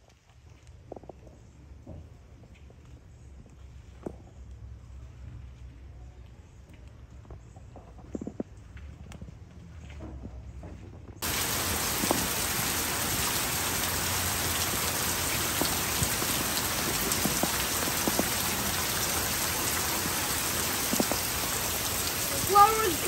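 Heavy rain pouring steadily onto pavement and foliage, starting abruptly about halfway through. Before that it is much quieter, with a low rumble and scattered faint ticks.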